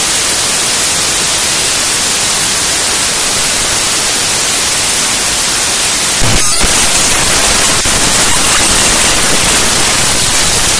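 Harsh, loud static from a raw-data glitch music track: a dense, steady hiss across the whole range, broken once about six seconds in by a short glitchy stutter with a low thump.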